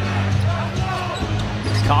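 A basketball being dribbled on a hardwood court.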